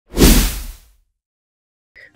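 A single whoosh sound effect with a deep boom under it, swelling up at once and fading out within about a second, accompanying a news programme's logo sting.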